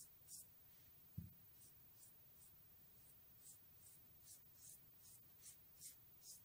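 Faint, repeated soft swishes of fingers rubbing and spreading a thick turmeric paste over the skin of the back of a hand, about two or three strokes a second. A single low thump comes about a second in.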